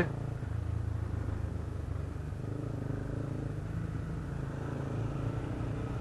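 Motorcycle engine running steadily at low speed, a low even hum with no revving.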